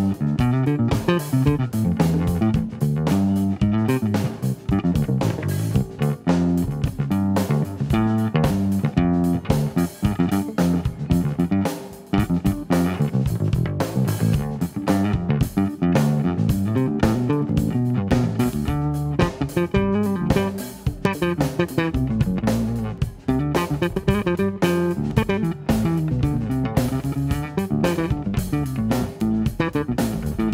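Live band playing an instrumental passage, with guitar and bass guitar prominent over a steady beat.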